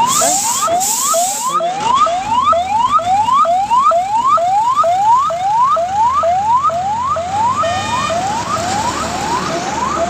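Police vehicle siren sounding a fast, repeating rising yelp, about two and a half upward sweeps a second, over the low rumble of highway traffic.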